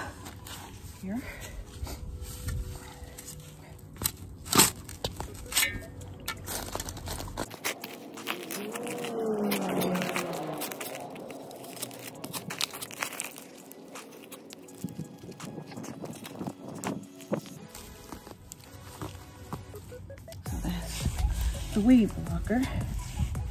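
Garden shovel digging into mulch-covered soil: repeated scraping, crunching strikes of the blade, the sharpest about four and a half seconds in, over background music.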